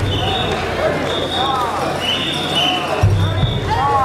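Mikoshi bearers chanting in rhythm, overlapping voices in unison, while whistles keep time in short repeated blasts at two alternating high pitches, about two a second. A brief low rumble comes about three seconds in.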